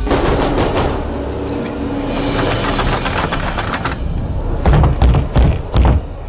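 Horror-film sound design: a fast, dense clattering rattle, then four heavy booming hits in the last second and a half.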